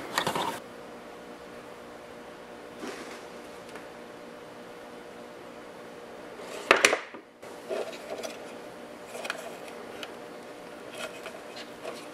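Quiet bench room tone with a faint steady hum, broken by small clicks and rustles of hands handling small electronic parts and a plastic case. A brief sharp noise about seven seconds in is the loudest thing.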